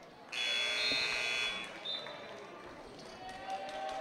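Gymnasium scoreboard buzzer sounding once, a harsh steady electronic tone lasting just over a second shortly after the start, signalling a substitution at the dead ball after the free throw.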